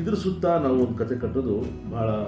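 A man speaking Kannada to camera over a soft background bed of guitar music.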